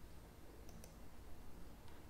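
Faint computer mouse clicks: a quick pair about two-thirds of a second in, and another click near the end.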